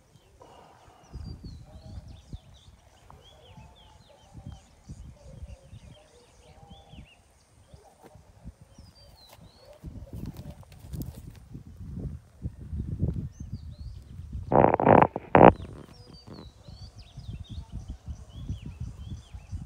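Birds chirping repeatedly over an uneven low rumble of wind on the microphone, with a short loud call lasting about a second, about three-quarters of the way through.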